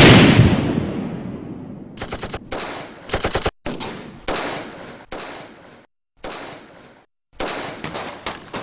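Battle sound effects: a loud explosion right at the start that dies away over about two seconds, followed by single gunshots and short bursts of gunfire. The shots come every half second to a second, each trailing off, with abrupt silent gaps between some of them.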